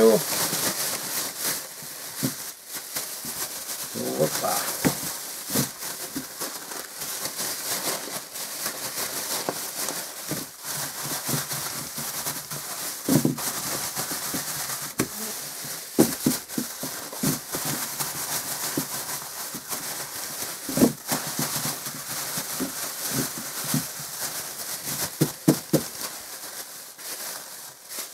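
Thin plastic bag crinkling and rustling continuously as cucumbers with salt, pressed garlic and dill are shaken and kneaded inside it, with sharp crackles every so often: the salt and seasoning being mixed through the quick-salted cucumbers.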